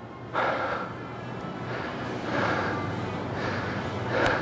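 A man breathing hard after a fast set of kettlebell and dumbbell exercises: heavy, noisy breaths about every two seconds.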